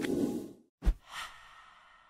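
Edited sound effects: a breathy rush of noise, a single sharp low hit a little under a second in, then a whooshing ring that fades away.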